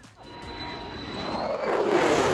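F-35 Lightning II fighter jet approaching overhead. Its jet noise swells steadily louder, with a faint high whine rising slightly in pitch.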